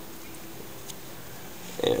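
Low room tone with a couple of faint, soft clicks from hands handling a cloth knife bag, then a short spoken word near the end.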